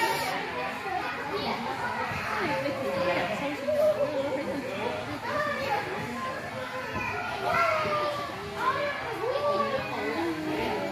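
Children playing: many overlapping children's voices calling and chattering continuously in a large indoor room.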